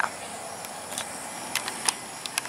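Quiet outdoor background: a steady hiss with a few faint clicks.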